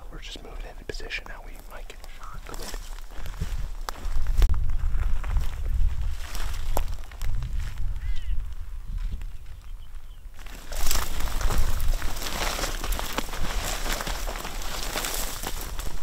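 Hushed whispering during a stalk through dry bush, with wind rumbling on the microphone from about four seconds in. A louder, even rustling hiss fills the last five seconds.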